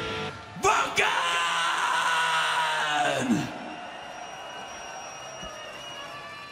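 The band's heavy guitar music cuts off near the start. A single loud, drawn-out yell into the stage sound follows, lasting about three seconds and sliding sharply down in pitch at its end.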